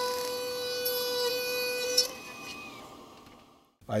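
Dental lab rotary handpiece spinning a cutting disc through a plastic impression tray handle, a steady high-pitched whine. About two seconds in it stops with a brief click and the sound dies away.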